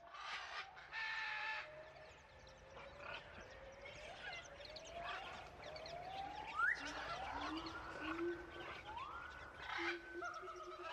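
Rainforest nature recording: animal calls, mostly rising whistled glides that each climb over about a second and follow one another, with a few shorter calls near the start, over a low steady rumble.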